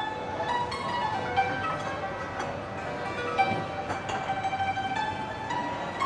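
Qanun, a plucked table zither, playing a quick solo melody of ringing notes in the middle register.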